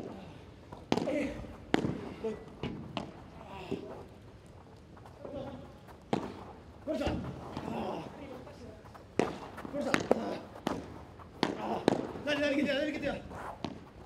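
A padel rally: sharp knocks of the ball struck by the paddles and bouncing off the court and glass walls, coming irregularly about once a second, with voices talking over them.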